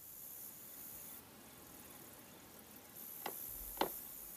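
Faint high hiss, then two short knocks near the end, about half a second apart.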